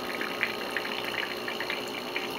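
Steady bubbling of air escaping into saltwater from an air-pump-fed algae scrubber, with faint small pops. The air comes out as bubbles because the scrubber's top still sits below the waterline; raised just out of the water, the bubbling stops and the unit runs silent.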